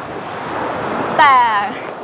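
Sea surf washing onto the shore, a steady rush that swells over about the first second.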